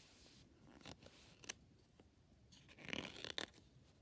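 Paper page of a picture book being handled by fingers: a couple of faint taps, then a short rustle of paper about three seconds in.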